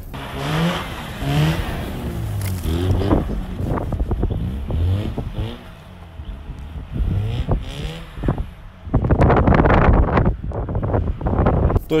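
Mazda RX-8's twin-rotor Wankel engine revving up and down again and again while the car slides sideways on snow. Near the end a loud rushing noise comes in for a couple of seconds.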